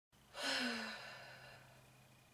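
A woman's voiced sigh that starts about a third of a second in, falls in pitch and fades away over about a second.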